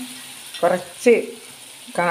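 Oil and spice masala sizzling gently in a kadai as a pickle base cooks, stirred with a steel spoon, with one sharp click about a second in.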